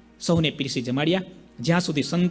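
Only speech: a man talking into a microphone, with two short pauses between phrases.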